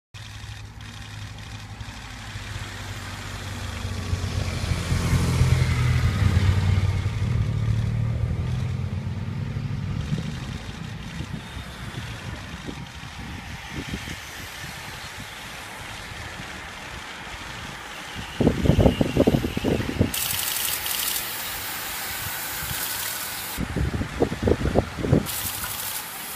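A motor vehicle passes, its engine hum swelling over a few seconds and then fading. In the last third, a group of road-race bicycles rides past with a loud hiss and irregular low rumbling bursts like wind buffeting the microphone.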